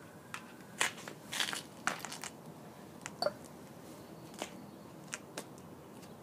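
Handling noise: a dozen or so irregular sharp clicks and crackles from hands working the small drive motor and its wiring at the base of the gyro rig.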